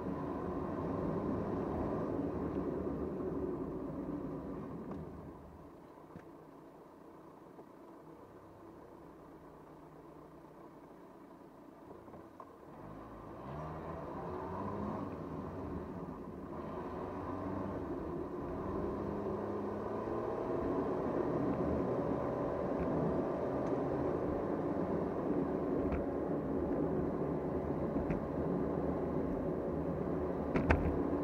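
Car driving, heard from inside the cabin: steady road and engine rumble. It goes quieter for several seconds in the first half as the car slows, then builds again as it pulls away, with an engine note rising briefly as it gathers speed.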